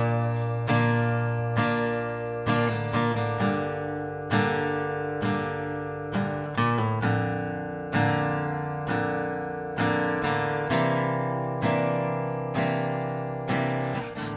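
Acoustic guitar playing an instrumental break between sung verses of a song. Chords are struck about once a second, with quicker picked notes between some of them, each ringing and fading before the next.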